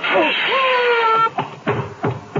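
Radio-drama sound effect of a guillotine falling on a man: a long scream over a hissing rush, cut off about a second and a quarter in, then a few heavy thuds.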